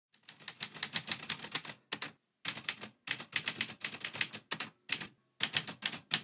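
Manual typewriter typing in quick runs of keystroke clacks, broken by short pauses.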